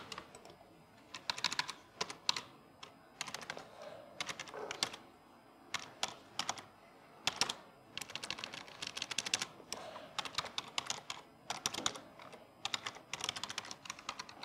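Computer keyboard being typed on in quick runs of keystrokes separated by short pauses, with a few louder single key presses.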